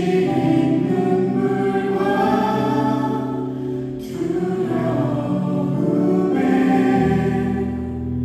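Live contemporary worship music: a group of men and women singing a Korean praise song together into microphones, with band accompaniment.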